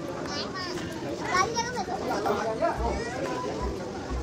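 Several people chatting in the background, with a small child's high voice heard in short bursts.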